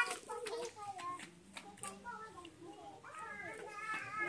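A toddler's high voice chattering and calling out in short, mostly wordless bursts, with a longer call near the end.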